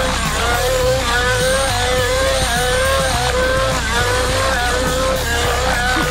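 Nitro RC helicopter's O.S. .105 two-stroke glow engine running at high revs, a steady high-pitched whine whose pitch dips and recovers every second or so as the helicopter is thrown through aerobatic manoeuvres.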